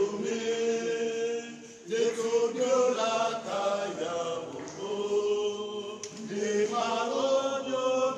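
Choir chanting a slow processional hymn in long held notes, with a short breath between phrases just before two seconds in.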